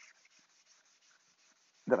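Scotch-Brite abrasive pad scrubbed quickly back and forth by hand over the WD-40-wetted cast iron table of a Shopsmith 4-inch jointer, taking off surface rust: a faint, rapid, rhythmic rasping.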